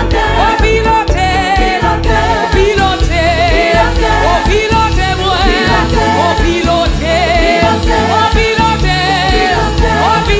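Live gospel worship music: a woman sings lead into a microphone with a wavering vibrato, backed by other singers and a band with a steady, heavy bass line.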